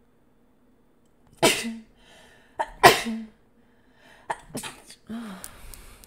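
A woman sneezing twice, about a second and a half apart, each sneeze a sharp burst ending in a short voiced tail. A few quieter breathy sounds follow near the end.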